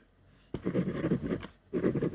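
Ballpoint pen writing on white paper on a desk, in short scratchy strokes. They start about half a second in, break off briefly, and resume near the end.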